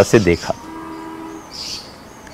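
The end of a man's speech, then a faint steady tone in the background lasting under a second, like a distant horn, followed by a brief high hiss.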